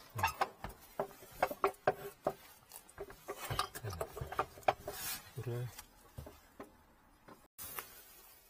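Metal parts being handled and shifted by gloved hands: scattered light clicks and knocks, with a few short low mutters from the man in between.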